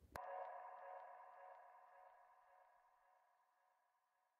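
A sharp click, then a ringing electronic tone made of several steady pitches that slowly fades out over about three and a half seconds.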